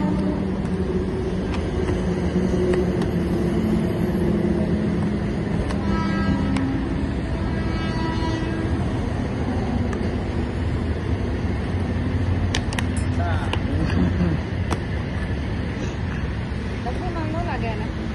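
Steady road-traffic rumble with faint voices in the background, a short horn-like tone twice in the middle and a few sharp clicks later on.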